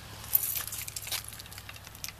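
Keys jingling in a hand: a sharp click about a third of a second in, then about a second of light metallic clinking.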